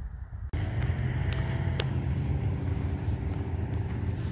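A steady low engine hum that starts abruptly about half a second in, with two sharp clicks soon after.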